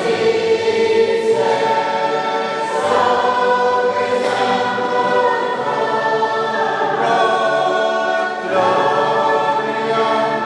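A choir singing a hymn, many voices holding long notes together and moving to a new chord every second or so.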